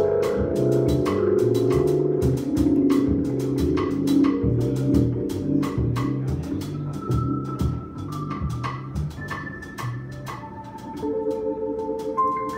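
Live jazz trio of electric piano, upright bass and drums: a repeating walking bass figure under keyboard chords, with steady cymbal strokes. It gets quieter in the second half, with longer held keyboard notes near the end as the tune winds down.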